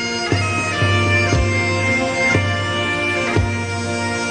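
Bagpipes playing a slow melody over their steady drone, with a drum beat about once a second, in the instrumental break of a song.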